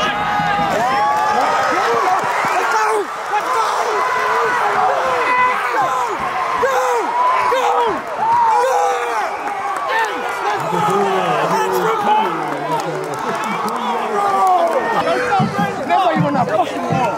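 Football stadium crowd cheering and yelling during a play, many voices shouting over one another, with a deeper man's voice joining in about ten seconds in.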